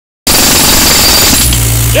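Pneumatic jackhammer hammering into rocky clay, then letting off about one and a half seconds in, leaving the steady low hum of the air compressor's engine.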